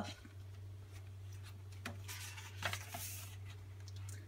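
A page of a hardcover picture book being turned: faint paper rustling and a couple of soft ticks, loudest at about three seconds in, over a low steady hum.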